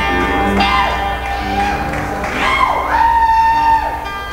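Live band playing, with a lead part of long held notes that bend up into pitch, hold, then fall away, over a steady band backing.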